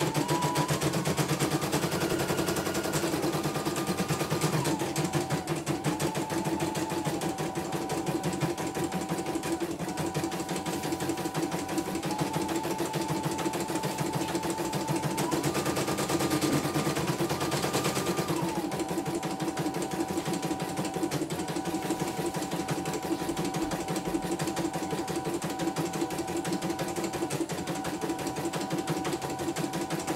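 Computerized embroidery machine stitching a design: a fast, steady run of needle strokes. Over it a thin whine steps up and down between a few pitches every few seconds.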